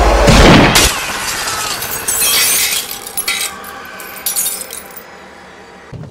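A loud bang in the first second, then window glass shattering about two seconds in, with smaller bits of glass tinkling down over the following seconds: a rifle shot punching through a window pane.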